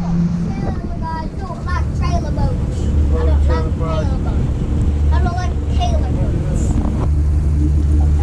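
Pontoon boat's outboard motor running steadily under way, a low drone that grows stronger about two seconds in.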